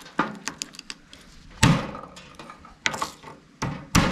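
Knife and garlic cloves knocking on a bamboo cutting board: several light taps, a loud thunk about a second and a half in, and two more knocks near the end.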